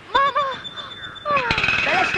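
A brief exclamation from a voice, then a fast, rough rattling that starts about one and a half seconds in, with a voice over it.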